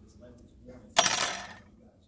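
A sharp metallic clink about a second in, with a short rattle that fades within half a second.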